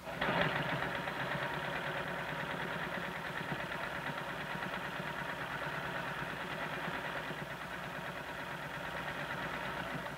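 Electric sewing machine running steadily at a fast, even stitch rate as fabric is fed under the needle, stopping at the end.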